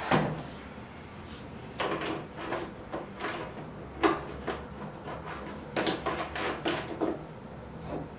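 Plastic jerry cans and a measuring cylinder being handled on a wooden desk: irregular knocks and clunks, with a sharp knock at the start and several clusters of handling noise.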